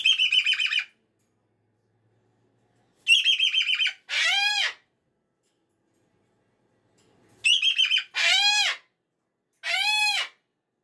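Moluccan cockatoo screaming in loud bouts: a rapid stuttering run of notes, then a long screech that rises and falls, repeated twice, with a lone screech near the end. It is an unhappy, protesting fit.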